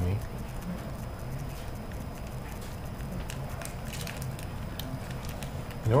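A foil soup-base packet being squeezed and handled, with faint crinkles and ticks over a steady low hum.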